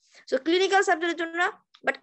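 Speech only: a woman talking in Bengali, with one long drawn-out stretch of voice.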